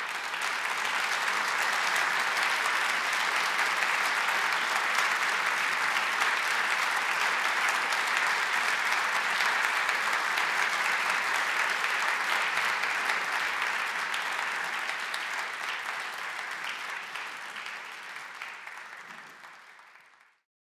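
Audience applause after a concert: steady, dense clapping that fades over the last few seconds and then cuts off.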